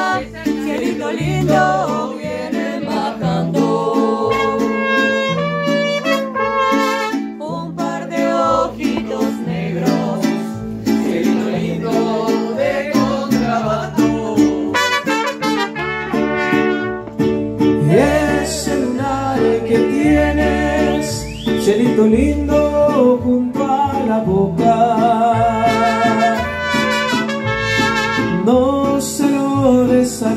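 Mariachi band playing live, trumpets carrying the melody over strummed guitars and a deep bass line stepping from note to note.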